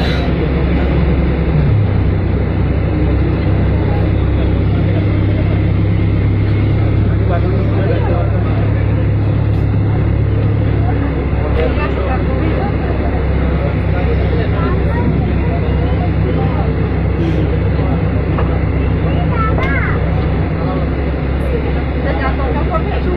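Vehicle engine running steadily as it drives slowly, a low hum that grows stronger about two seconds in and eases off around eleven seconds. Faint voices talk in the background.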